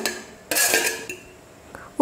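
A steel plate scraping against the rim of a stainless-steel mixer-grinder jar as sautéed greens are tipped in. There is a short metallic scrape about half a second in that fades quickly, then a faint click near the end.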